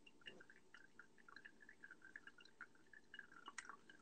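Very faint pour of hot water from a gooseneck kettle onto coffee grounds in a pour-over dripper, heard as scattered soft ticks and drips.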